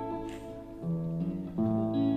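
Two guitars playing an instrumental passage together: a hollow-body electric guitar and an acoustic guitar, with the plucked notes and chords changing about twice.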